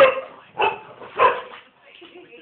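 A dog barking three times in quick succession, loud and sharp, about half a second apart.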